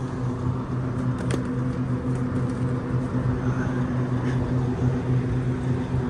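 Walk-in freezer's evaporator fans running: a steady low hum over a continuous rush of air.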